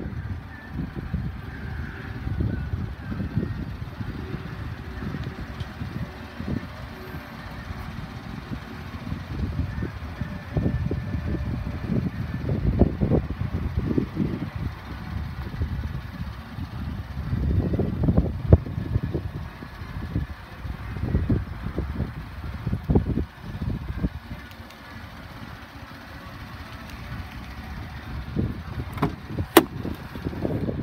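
Wind buffeting the microphone in uneven gusts, with handling rumble. Just before the end come a few sharp clicks as a pickup truck's door handle is pulled and the door opens.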